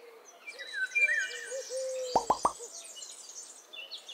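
Birds chirping and trilling, with a lower wavering hooting call and three quick loud plops about two seconds in.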